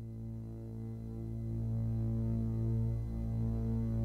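Low, steady humming drone of ambient film-score music, slowly swelling louder.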